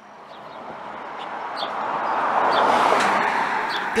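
A car driving past on the bridge's asphalt deck, its tyre and road noise growing louder as it approaches and peaking about three seconds in.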